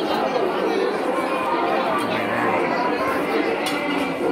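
Crowd chatter: many people talking at once in a steady, overlapping babble of voices.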